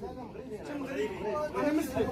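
Speech only: men talking in Arabic.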